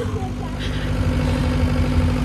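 A vehicle engine idling nearby: a steady low hum that runs under brief bits of voices.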